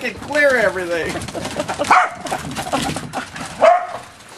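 Corgis barking and yelping in short pitched calls during a backyard chase, mixed with a person's wordless laughing.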